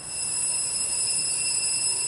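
Altar bell ringing with a high, bright ring that starts suddenly, holds for about two and a half seconds and then dies away, rung at the priest's communion from the chalice.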